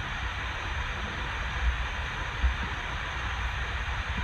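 Steady background hiss with a low rumble underneath: room tone picked up by the microphone during a pause in speech.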